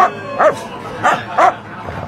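A dog barking at someone, a quick run of about four short, loud barks in the first second and a half.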